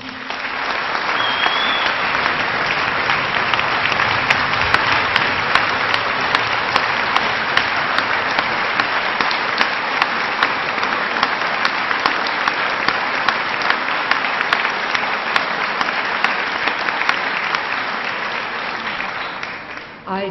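Large audience applauding, dense steady clapping that fades out near the end.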